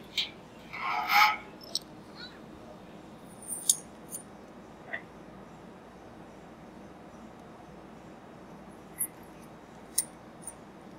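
Scattered metallic clinks and knocks from a liquid-helium transfer line being handled and lowered into a storage dewar. The clinks are loudest in the first two seconds and are followed by a few faint taps, over a low steady room background.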